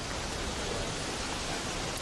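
Steady, even rushing noise with no distinct events, the outdoor ambience picked up by a body-worn camera's microphone.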